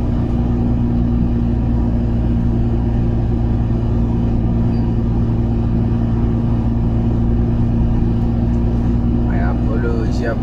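Heavy truck's diesel engine droning steadily at highway cruising speed, with tyre and road noise, heard inside the cab.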